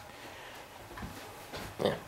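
Faint room noise, then a man's short 'yeah' near the end.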